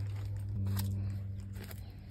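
Low steady hum with a second, higher steady tone joining about half a second in, and a few faint rustles.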